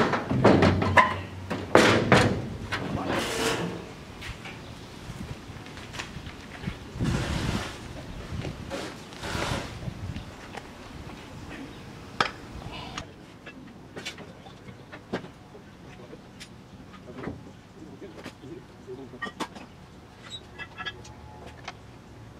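Heavy knocks and clanks of a steel stand being shifted about on a steel-framed utility trailer, loudest in the first few seconds, followed by scattered lighter knocks and clicks.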